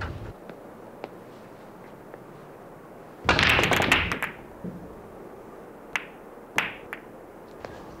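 Billiard balls on a pool table: a dense clatter of balls knocking together about three seconds in, then two sharp single clacks of ball on ball about a second and a half apart.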